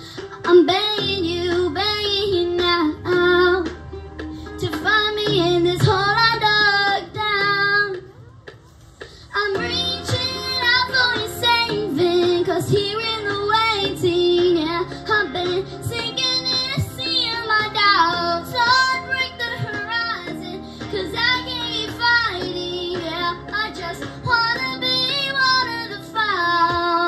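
A young girl singing a slow song solo into a microphone over a soft instrumental backing, with a short break between phrases about eight seconds in.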